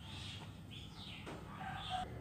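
Faint bird calls in the background: a few short high calls, then a longer, lower call near the end.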